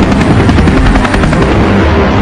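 Helicopter rotor chop, a fast even beating with the engine running under it.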